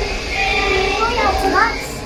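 Children's voices chattering, one rising in pitch about one and a half seconds in, over a steady low rumble.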